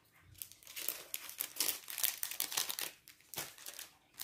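Clear plastic wrapping around stacks of football stickers crinkling and rustling as it is handled, in irregular bursts with a brief lull after about three seconds.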